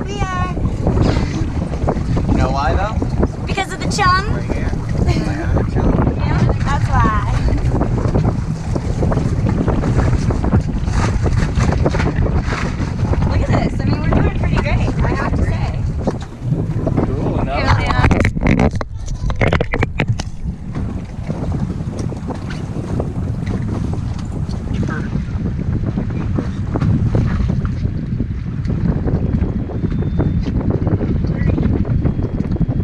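Wind buffeting the camera microphone on an open boat at sea, a steady low rumble, with indistinct voices early on and a brief run of clicks about two-thirds of the way in.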